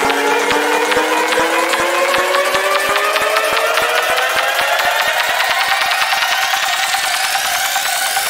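Electronic dance music build-up in a DJ mix: a synth riser climbing steadily in pitch over a drum roll that gets faster and faster, with the bass cut out.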